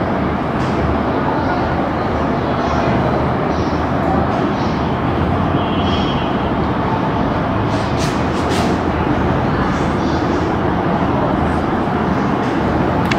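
Steady loud background rumble and hiss, with a few short squeaks and scratches of a marker drawing lines on a whiteboard, about halfway through and again a little later.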